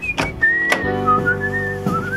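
A person whistling a wandering tune, with a few sharp knocks. Sustained background music chords come in about a second in.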